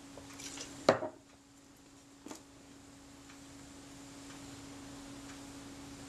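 Small objects handled on a workbench: a sharp tap about a second in and a softer one about a second and a half later, over a steady low hum.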